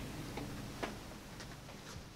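Faint footsteps on a hard floor, about two soft clicks a second, over quiet room tone.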